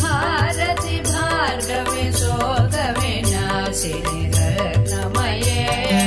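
Hindu devotional song to the goddess Lakshmi: a wavering, ornamented melodic line sung over a steady drone and regular percussion.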